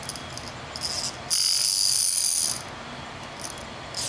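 A baby's toy rattle being shaken: a short burst about a second in, then a longer, steady shake of just over a second, bright and jingly.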